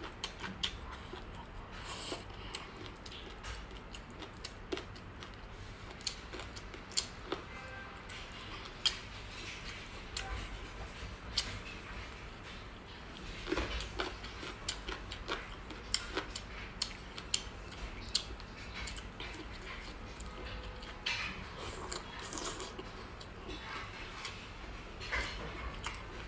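A person eating from a ceramic bowl with chopsticks: chewing and slurping, with scattered sharp clicks of the chopsticks against the bowl.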